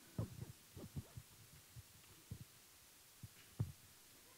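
Handheld microphone handling noise: a string of soft, irregular low thumps and knocks, with the loudest one near the end.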